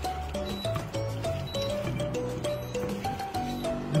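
Background music: a simple melody of short, evenly paced notes over a bass line.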